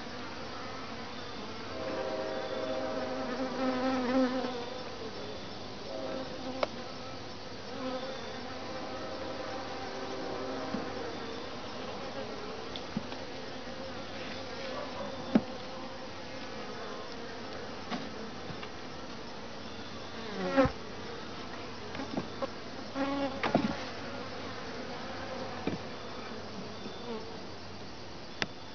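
Honeybees buzzing around an open top-bar hive, with one bee flying close and buzzing louder between about 2 and 4 seconds in. A few sharp wooden clicks and knocks come as the top bars are set back in place.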